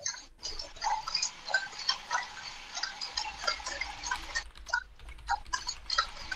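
Small servo-driven biped robot walking: an irregular patter of light clicks and short high whirs, several a second, from its servos and feet.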